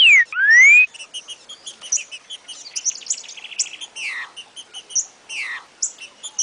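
Trinca-ferro (green-winged saltator) singing its rare 'Joaquim já foi do Mineirinho' song type, which opens with loud, clear whistled notes that slur up and down in the first second. Quieter chirps, a short rapid trill about three seconds in, and falling whistles near four and five and a half seconds follow, over small high chirps.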